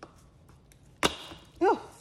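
The stuck top of a new seasoning shaker bottle comes free with one sharp snap and a short rasping rustle about a second in. A woman's brief "Oh" follows near the end.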